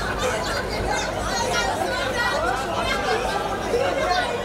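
Chatter of several people talking over each other.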